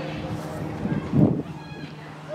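A child's voice making short wordless sounds: a loud rough burst just past the middle, then a brief high squeak near the end, over a steady low hum.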